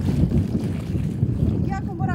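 Wind buffeting the microphone: an uneven low rumble throughout, with a voice starting briefly near the end.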